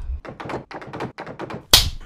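A quick run of about ten light taps and knocks, then one sharp, loud, hissing hit near the end.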